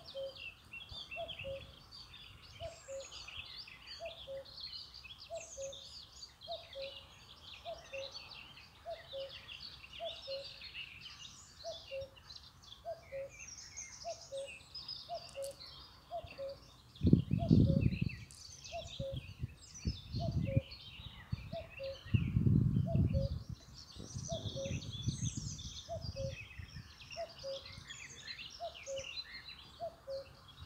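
Woodland birds singing and chirping, with a low two-note call, the second note lower, repeating steadily more than once a second. A few loud low rumbles come in a cluster from about 17 to 25 seconds in.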